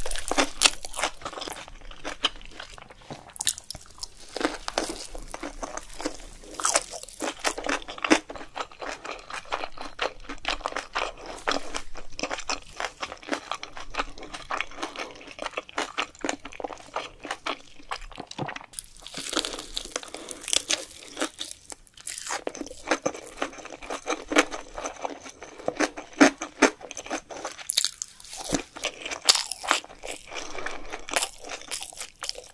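Close-miked chewing of Korean snack-bar food: a dense, irregular run of crunches and wet mouth clicks as one person bites and chews, with a few brief pauses.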